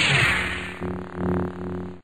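Synthesized intro sound effect: a loud hissing whoosh that fades away, followed about a second in by a low steady electronic hum that swells once and then cuts off suddenly.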